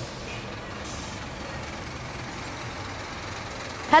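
City street traffic with a bus driving past: a steady rumble and a short hiss, like air brakes, about a second in.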